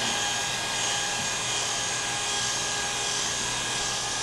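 Electric hair clippers running with a steady hum as they cut short hair on the back of a man's head.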